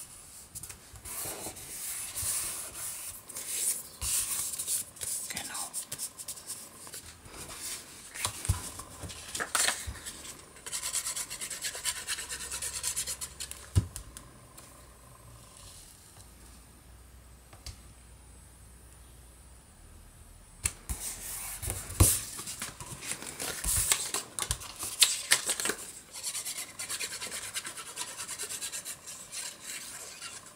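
Paper rustling and scraping as hands rub and press glued paper strips flat onto card stock, with scattered small clicks and taps. The rubbing eases off for a while in the middle, then picks up again.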